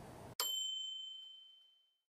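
A single bell-like ding: one sharp strike with a clear high ringing tone that fades out within about a second.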